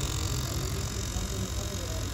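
Fuel injector cleaning and testing machine running: a steady low hum from its pump with a hiss as the injectors spray test fluid into the graduated cylinders.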